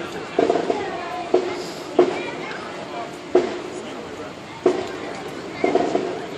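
People talking close by, with crowd chatter along a parade route.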